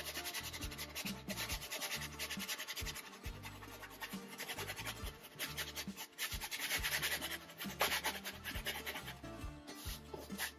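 Wide flat brush scrubbing oil glaze across a stretched canvas: a rapid, dry, scratchy rubbing that keeps going and grows louder about two-thirds of the way through. Background music with low held notes plays underneath.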